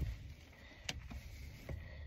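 Hair-handling noise as braids are gathered up close to the microphone: a light click about a second in and another near the end, over a low steady rumble in the car cabin.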